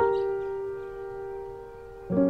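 Soft piano background music: a chord is struck at the start and left to ring, fading slowly.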